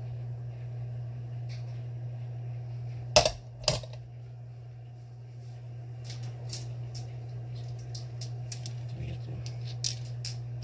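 Small rocks of iron-stained quartz and chert clacking against one another as they are picked through and handled. There are two sharp knocks a half-second apart about three seconds in, then a scatter of lighter clicks, over a steady low hum.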